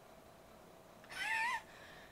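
A single short, high-pitched call about a second in, rising at its end, over a faint steady hum.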